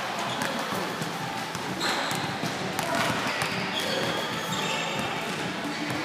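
An indoor basketball game: a ball bouncing on the court over background crowd chatter, with short high squeaks about two and four seconds in.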